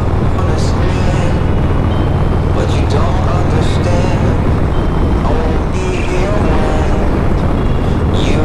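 Harley-Davidson Road Glide's V-twin engine running at a steady cruising speed, with wind noise on the microphone. Music with a singing voice plays over it.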